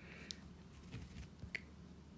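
Two faint, light taps of a stylus on a tablet's glass screen, about a second apart.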